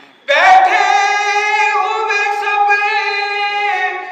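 A man's voice chanting a salam, an Urdu elegy, unaccompanied and in a high register: one long sung phrase starts just after the beginning, held with a wavering pitch, and steps down twice toward the end.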